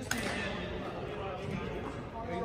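Men talking indistinctly on a gym badminton court, with one sharp tap just after the start.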